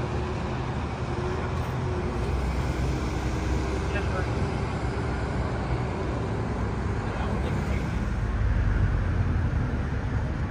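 Steady highway traffic noise from vehicles passing on the road, swelling briefly about eight seconds in as one goes by close.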